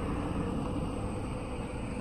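Steady road and engine noise heard inside a moving car's cabin.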